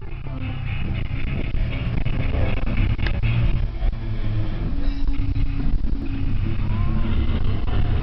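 Wind buffeting a camcorder's built-in microphone outdoors: a loud, uneven low rumble, with faint crowd sound behind it.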